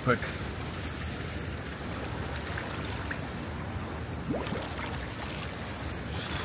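Pool water sloshing and lapping steadily around a swimmer as he ducks under and comes back up, with a short rising sound, a breath or gasp, about four and a half seconds in.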